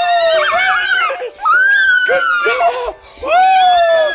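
Girls shrieking and cheering with excitement in three long, high-pitched cries of "yeah!", over faint background music.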